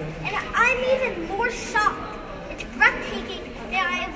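A young boy speaking into a handheld microphone, with murmur of people around him in a large room.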